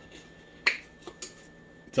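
A sharp plastic click about two-thirds of a second in, followed by a couple of fainter clicks: the flip-top cap of a plastic ketchup squeeze bottle being snapped open.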